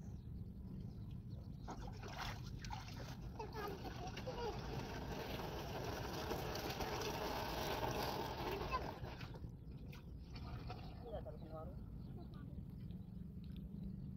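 Water being poured from a plastic jerry can into a diesel pump-set engine: a steady splashing pour of several seconds that stops abruptly. A low steady rumble runs underneath throughout.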